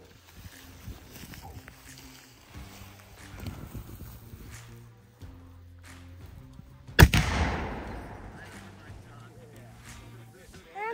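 A small replica cannon on a wheeled carriage firing once, about seven seconds in: a single sharp bang that dies away over about a second. Before the shot there is only a faint low hum.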